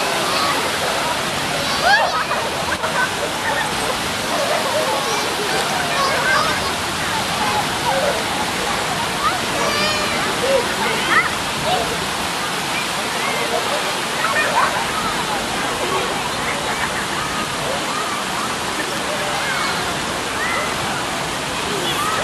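Steady rush of running water in a shallow park fountain pool, with children splashing as they wade and scattered distant children's shouts and voices over it.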